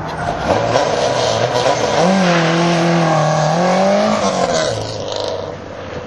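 Subaru Impreza 2.5RS flat-four engine pulling hard from a standing start, the revs climbing and holding high, then falling off sharply near the end as the throttle is lifted.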